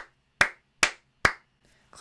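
A person clapping hands four times at an even pace of a little over two claps a second, then stopping, counting out the answer five in claps.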